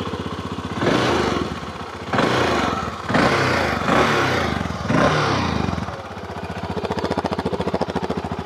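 VOGE 650 DSX's 650 cc single-cylinder engine, the former BMW 650 single revived by Loncin, idling just after starting and blipped four times with the throttle, each rev rising briefly before dropping back, then settling to a steady idle. A deep, rumbling big-single sound through its stock Euro 5 stainless exhaust.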